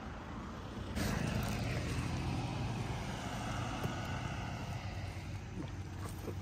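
A motor vehicle driving past on the road: engine and tyre noise swell about a second in and then fade slowly.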